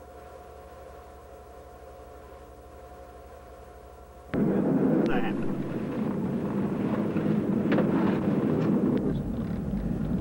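Faint steady hum, then a little over four seconds in an abrupt jump to loud car engine and road noise heard inside the cabin.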